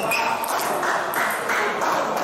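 A plastic table tennis ball strikes once right at the start with a short, high ping. Voices and other play in a sports hall carry on behind it.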